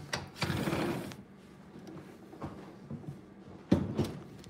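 A window sliding open in its frame: a scraping rush of about a second, then a sharp knock near the end.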